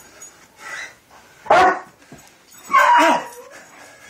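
Dog barking during tug-of-war play: a soft bark, then a short loud bark about a second and a half in and a longer loud one just before three seconds.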